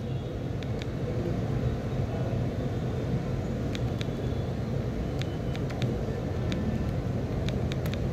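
Steady low background rumble with a few faint clicks scattered through it.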